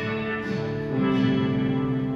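Guitar chords ringing out between spoken lines, with a fresh chord struck about a second in.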